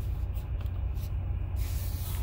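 Jeep Gladiator's 3.6-litre V6 idling, a steady low rumble heard inside the cab, with a few faint clicks. A broad hiss comes up near the end.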